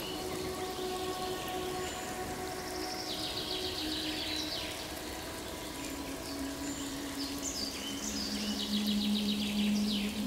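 Ambient nature soundscape: a steady rain-like hiss with birds chirping and trilling now and then, over soft held low tones that step lower and grow louder near the end.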